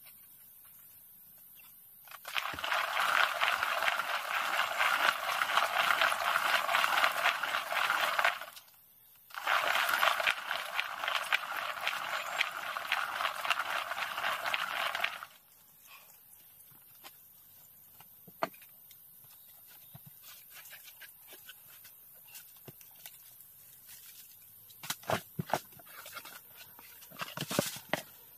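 Hand-turned bamboo rice husking mill grinding rice grain as its upper drum is swung back and forth by a wooden pole: two spells of steady grating, rattling grind of about six seconds each with a short pause between. After that it is much quieter, with a few light taps and scrapes near the end.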